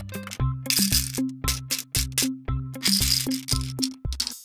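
Small candies rattling inside a plastic candy tube as it is shaken, in two spells, the second near the end. Background music with a steady thumping beat runs under it.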